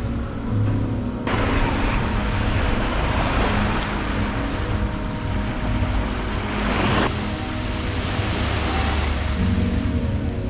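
Small waves washing onto a sandy beach. The surf begins suddenly about a second in, and one wash builds to a peak about seven seconds in and then breaks off sharply.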